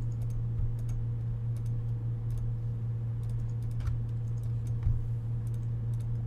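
Computer mouse clicking a dozen or so times at an irregular pace, over a steady low electrical hum.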